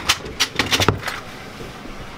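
A quick run of about five sharp knocks and taps in the first second as a slab of warm hard candy is handled and pulled on a work table, then quieter handling.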